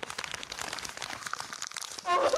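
Rapid, irregular keyboard clicks: a typing sound effect.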